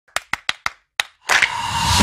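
Sound effects of an animated logo intro: four sharp clap-like clicks in quick even succession, a fifth after a short pause, then about 1.3 s in a loud whooshing swell with a steady high tone running through it.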